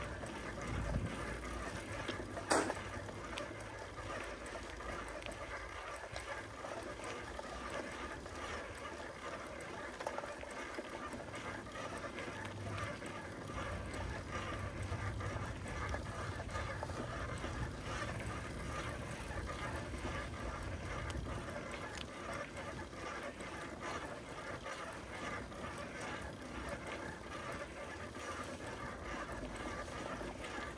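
Bicycle riding along a paved street: steady rolling noise from the tyres and drivetrain, with one sharp click about two and a half seconds in.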